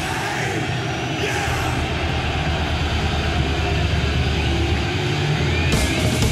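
Live thrash metal on a concert recording: a sustained low rumbling drone of amplified guitars and bass, with crowd noise, building up as a song begins. Near the end the drums and cymbals come in.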